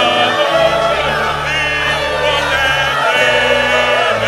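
A choir singing gospel music over held bass notes that step to a new pitch every second or so.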